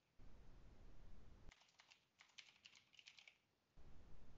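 Faint typing on a computer keyboard: a quick run of about a dozen keystrokes through the middle, starting about one and a half seconds in.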